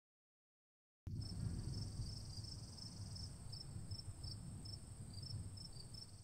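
Faint insects trilling: a steady high drone with short chirps repeating over it, coming in about a second in after a moment of dead silence, with a low outdoor rumble beneath.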